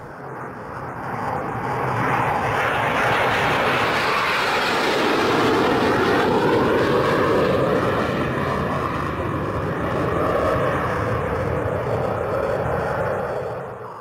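Jet airliner engines passing: a rushing noise that swells over the first few seconds, holds with slowly sweeping tones, and begins to fade near the end.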